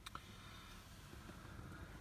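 Near silence: faint room tone with a light click at the very start.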